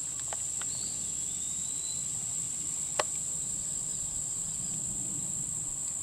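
Steady, high-pitched chorus of insects, with a single faint sharp click about halfway through.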